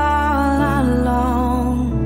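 Slow worship song: a singer holds a sung line over sustained keys and bass. The bass changes about half a second in, and the phrase ends near the end.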